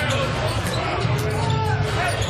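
Basketball dribbled on a hardwood court over steady arena crowd noise.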